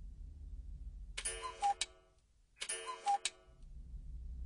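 A two-note chime, a higher note falling to a lower one, sounded twice about a second and a half apart, each ending in a sharp click.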